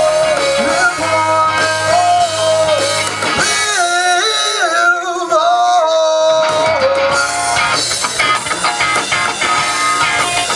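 Live rock band playing: electric guitar, bass guitar and drum kit, with a bending lead line on top. About three seconds in, the bass and drums drop out for a few seconds, leaving the lead alone, and the full band comes back in near seven seconds.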